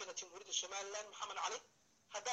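Only a man's speech, with thin telephone-like sound, breaking off into a pause near the end.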